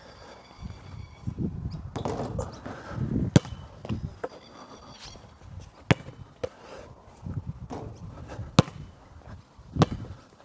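A basketball bouncing and striking hard surfaces during shooting practice on a hard outdoor court: several single sharp knocks, spaced a second or more apart.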